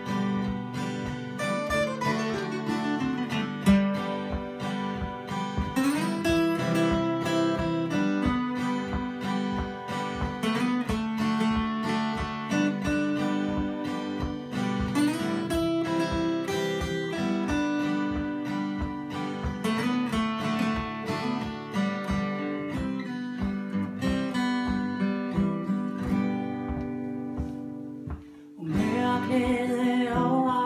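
Two acoustic guitars strumming and picking together in a steady rhythm through an instrumental passage. There is a brief drop just before the end, then a woman's voice comes back in singing.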